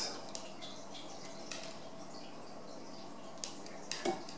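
Wire strippers taking the insulation off the ends of an 18-gauge speaker cable: a few faint clicks and snips, the sharpest about three and a half seconds in and again just before the end, over a faint steady background hiss.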